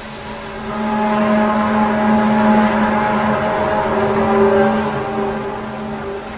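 A low, steady, horn-like drone at one fixed pitch with overtones. It swells up about a second in, holds, and fades near the end. It is one of the amateur recordings of 'strange trumpet sounds in the sky', whose real source is unknown.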